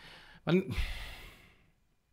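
A man sighs: a short voiced sound about half a second in, trailing into a long breathy exhale that fades out by about a second and a half.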